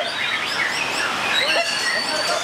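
White-rumped shama (murai batu) singing among other caged songbirds: varied whistles and chirps overlap. A long high whistled note is held from a little before the end.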